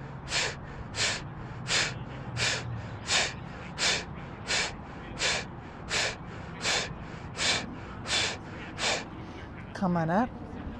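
Breath of fire (kapalabhati-style yogic breathing): sharp, forceful exhalations through the nose in a steady rhythm of a little more than one a second, about thirteen in all, stopping shortly before the end.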